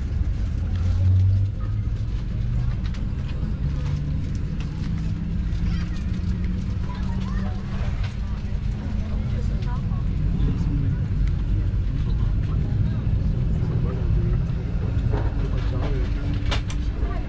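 Steady low rumble inside an airliner cabin, with passengers talking in the background and a few sharp clacks near the end.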